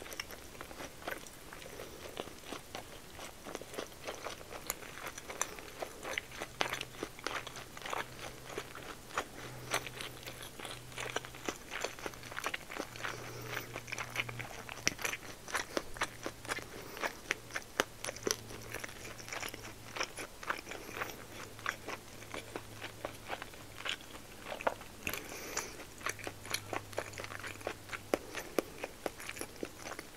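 Close-miked chewing of a mouthful of meat-wrapped rice ball (niku-maki onigiri: rice rolled in pork belly), with the lips closed: a dense run of small wet mouth clicks and smacks.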